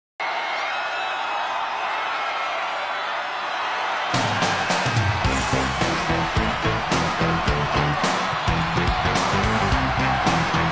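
A large arena crowd cheering; about four seconds in, a live band starts up with a steady drum beat, bass and electric guitars, over the crowd.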